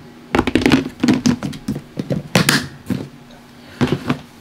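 Plastic reptile tubs and their lids being handled: a rapid run of clacks and knocks over the first three seconds, and one more knock near the end.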